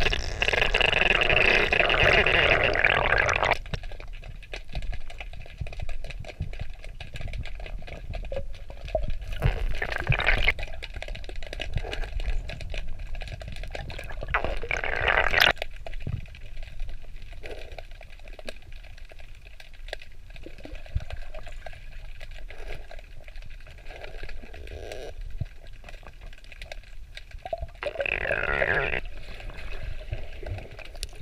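Underwater sound of exhaled air bubbles rushing past the camera's microphone: one long burst at the start, then shorter ones about ten, fifteen and twenty-eight seconds in. Between them there is a muffled underwater rumble with faint small clicks.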